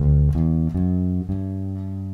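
Electric bass guitar playing the notes of a G major scale one at a time, a few plucked notes in quick succession and then one note held and left ringing.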